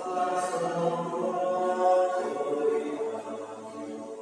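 A choir singing a hymn at Mass, the voices holding long sustained notes.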